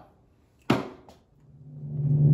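A single sharp knock about two-thirds of a second in, with a fainter one just after, then music swelling in near the end.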